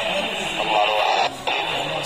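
Several people talking at once, with guitar music playing in the background.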